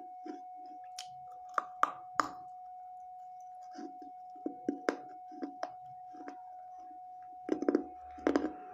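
Hard bites cracking through a piece of thick baked clay saucer, a few sharp snaps in the first couple of seconds, then slower crunching chews in the mouth. A faint steady high-pitched tone hums underneath throughout.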